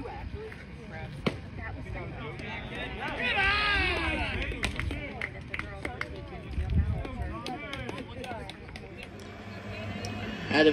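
Overlapping voices of people around a baseball field, no clear words, with one louder high-pitched voice calling out for about a second and a half a few seconds in. A single sharp click about a second in and a few faint ticks in the middle.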